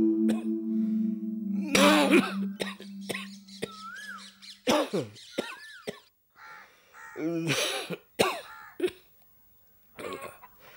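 A person coughing several times in short, harsh bursts. A held low music note underneath stops about halfway through.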